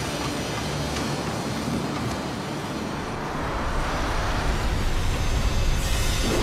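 Film sound-effects track: a dense, low rumbling roar that grows louder in the second half.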